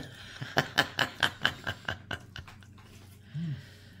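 A man chewing a mouthful of cheeseburger: a quick run of light mouth clicks that fades away over about two seconds, then a short hummed 'mm'.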